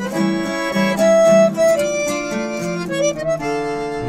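Piermaria button accordion playing a sustained melody over acoustic guitar accompaniment: an instrumental passage between sung verses of a folk song.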